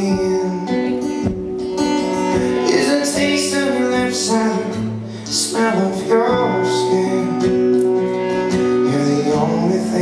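Instrumental break of a live acoustic song: steadily strummed acoustic guitar under a saxophone playing long, held melody notes.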